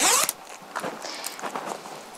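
Front zipper of a textile motorcycle jacket pulled open in one quick stroke at the start, followed by fainter rustles of the jacket as its front is spread open.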